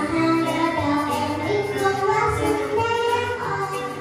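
A young girl singing a song through a microphone, holding long melodic notes, backed by a live band with drums and guitar.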